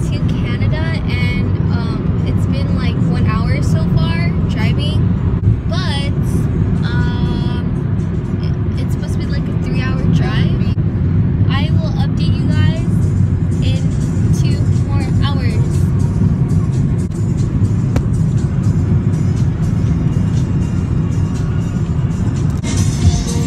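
Steady low road and engine rumble inside a moving car's cabin at highway speed, with voices and music over it.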